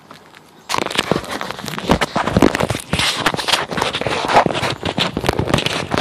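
Loud, dense crackling and scraping right at a phone's microphone, starting suddenly under a second in and continuing irregularly: handling noise as the phone is moved about.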